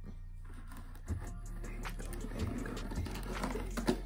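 A knife scratching and slicing through the top of a cardboard box, over background music.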